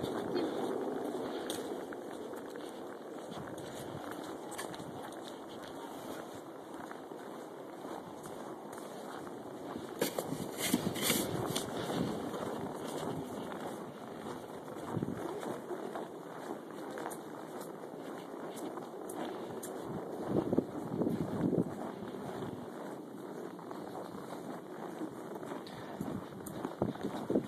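Footsteps through deep snow with a steady rush of wind on the microphone. There are louder bursts of knocks and rustling about ten seconds in and again around twenty seconds.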